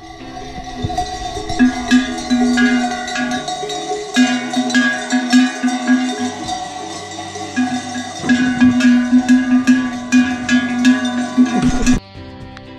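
Metal livestock bells (cencerros) on a walking flock of goats and sheep clanking unevenly, several bells ringing over one another with a close, loud bell dominating.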